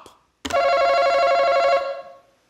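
Game-show face-off buzzer sounding as a contestant buzzes in: one steady electronic tone with a bright, ringing edge. It starts sharply about half a second in and lasts just over a second before fading.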